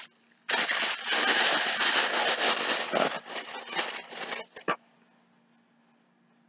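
Thin plastic bag crinkling and rustling as it is handled for about four seconds, then a couple of light clicks.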